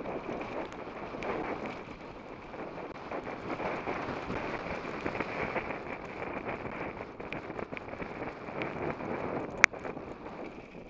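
Wind buffeting the microphone with the rattle and crunch of mountain bike tyres rolling over a wet, rocky gravel trail during a descent. A single sharp clack near the end is the loudest sound.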